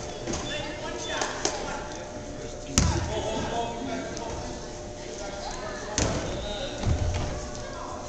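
Basketball bouncing on a gym's wooden floor: a sharp slap about three seconds in, then two duller thumps about a second apart near the end, over steady crowd chatter in the gym.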